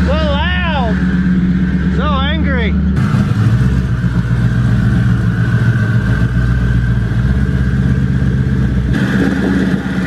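Car engine running, a steady low drone. A few short rising-and-falling vocal sounds come over it in the first three seconds. About three seconds in the sound changes abruptly to a steady drone with more hiss.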